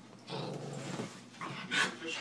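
Dogs play-wrestling, a yellow Labrador and a small dog: dog noises during the tussle, with a louder burst near the end.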